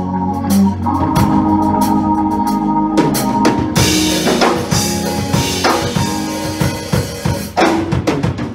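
Church band playing: sustained organ chords with a drum kit beating under them, the drum hits growing steadier and more prominent about three seconds in.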